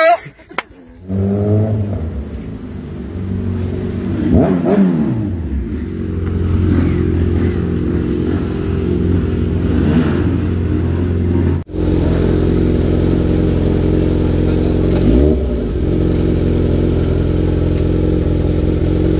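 Kawasaki Ninja 1000SX inline-four with an aftermarket Austin Racing exhaust idling steadily, blipped twice briefly, once about a quarter of the way in and again near the end. The sound breaks off sharply for a moment about two-thirds through.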